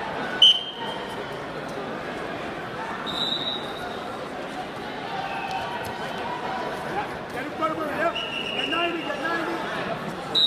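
Voices and chatter echo through a large sports hall. A referee's whistle blows once, short and loud, about half a second in as the wrestling bout starts. A few more short whistles sound later, from other mats.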